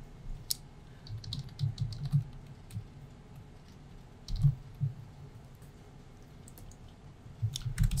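Computer keyboard typing: short runs of keystrokes, with a pause of about two seconds past the middle.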